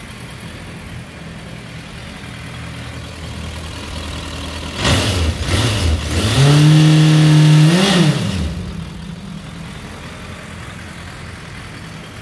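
Suzuki Bandit 1250F's inline-four engine idling evenly, then revved up about five seconds in, held at raised revs for about a second and a half, and dropped back to a smooth idle.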